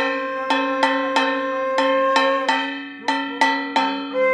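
Hand-held brass gong (kansar) struck in a steady beat, about three strikes a second, each strike ringing on. The beat breaks off for about half a second after two seconds, then picks up again.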